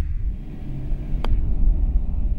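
Low rumble of wind on the microphone, with one sharp click about a second in as a putter strikes a golf ball.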